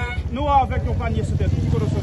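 A vehicle engine running steadily at low revs, a low hum that grows slightly louder near the end.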